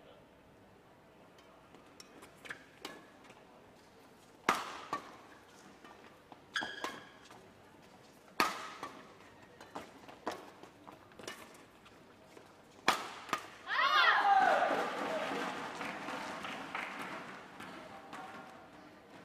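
Badminton rally: sharp racket strikes on the shuttlecock about every two seconds. About fourteen seconds in, the rally ends and the crowd in the hall cheers and shouts, then slowly dies down.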